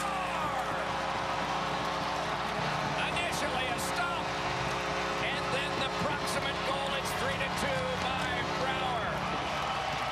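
Arena goal horn sounding one long steady blast for a home-team goal, cutting off near the end, over a loudly cheering crowd.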